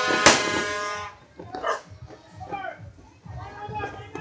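A horn blaring on one steady note until about a second in, with a sharp firecracker bang just after the start; then voices of people and children calling out.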